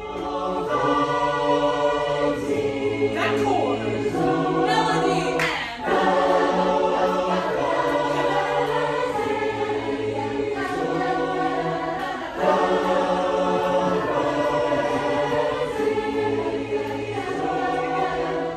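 A youth choir singing in several-part harmony, holding sustained chords that change every second or two.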